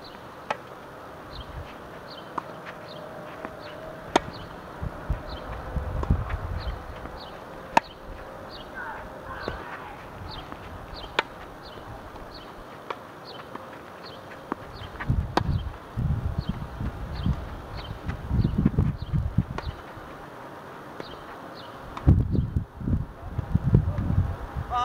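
Tennis rally on a hard court: sharp racket-on-ball strikes every three to four seconds, with fainter ball bounces between. Under it a high chirp repeats a couple of times a second, and wind rumbles on the microphone in the second half.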